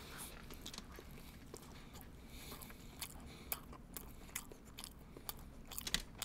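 Faint chewing of soft sandwiches, with a scattering of short, sharp mouth clicks.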